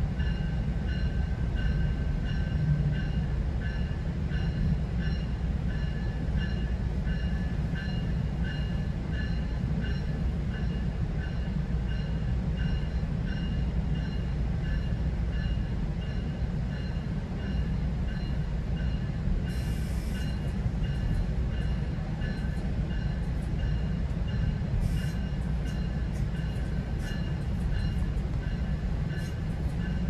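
GO Transit commuter train heard from inside a passenger coach: a steady low rumble of the train rolling along the track, with faint steady high tones over it. About two-thirds of the way through there is a short hiss, followed by a few light ticks.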